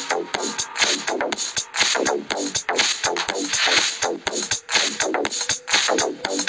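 Two electronic dance tracks beatmatched at 122 BPM, mixed together on a phone DJ app, with a steady beat of about two strokes a second. The second track is brought up to full volume during the mix.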